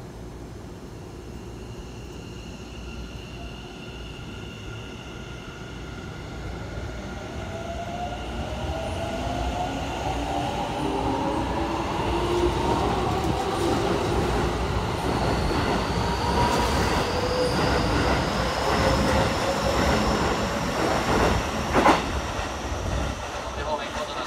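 Keikyu 1000 series stainless electric train pulling away from a station stop: its traction motors whine in several tones that climb steadily in pitch as it picks up speed, over a growing rumble and clatter of wheels as the cars run past. There is a single sharp knock near the end.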